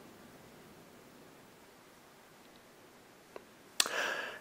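Near silence: the phone's ringback has just stopped. A faint click comes a little over three seconds in, then a sharp click and a short burst of noise near the end as the video chat call connects.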